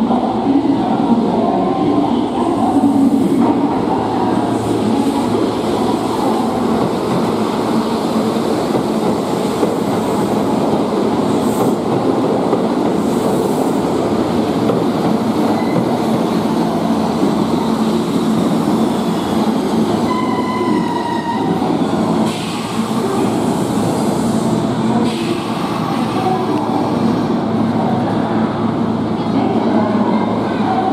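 Kintetsu Vista Car double-decker limited express train pulling into an underground station platform: a steady rumble of wheels and running gear echoing in the enclosed station, with a brief high tone about two-thirds of the way through as the train slows.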